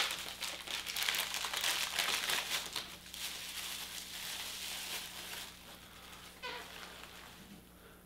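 Plastic bubble wrap crinkling and crackling as it is pulled off a small vinyl figure, busiest in the first three seconds and fading out over the second half.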